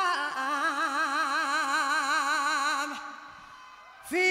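A woman's voice singing unaccompanied: after a short step down in pitch she holds one long note with a wide, even vibrato, which fades out about three seconds in.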